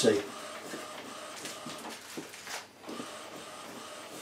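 Epson WorkForce WF-2010W inkjet printer printing: the print-head carriage motor runs steadily as the head travels back and forth, with a brief pause about two and a half seconds in before it runs again. It is printing blocks of ink to clear the newly fitted sublimation ink through the nozzles.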